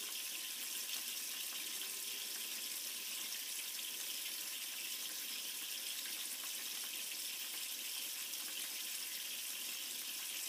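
Water from a pump-fed mini high banker sluice pouring down its riffled box and splashing into the tub below, a steady rushing like a running tap.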